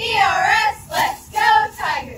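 Cheerleading squad chanting a cheer in unison, about four loud shouted syllables from many girls' voices together.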